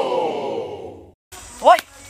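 A person's long, drawn-out voiced sigh, falling slightly in pitch and ending about a second in. After a brief cut, a short spoken exclamation follows near the end.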